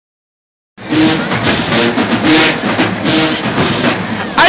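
Marching band music, brass notes over drums, loud and harsh through the phone's microphone, cutting in suddenly just under a second in.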